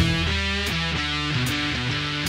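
Short guitar jingle: strummed guitar chords over a steady bass line, playing as the show's logo sting.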